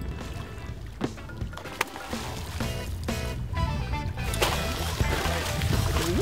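Background music, over a steady low rumble.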